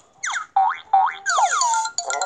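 Cartoon sound effects from a children's animated story app: a quick run of springy boings and sliding pitch sweeps going up and down, ending in a longer falling swoop, over light background music.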